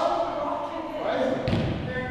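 Players' voices echoing in a large gymnasium, with a single volleyball thud about one and a half seconds in.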